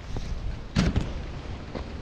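Handling knocks of an FPV quadcopter carrying a GoPro as it is set down on bare dirt ground: one sharp thump just under a second in, then a couple of lighter clicks, over a low rumble of handling and wind on the camera's microphone.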